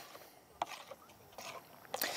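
Faint, sparse clicks of a spoon against a bowl as milk and eggs are stirred together for a fish batter.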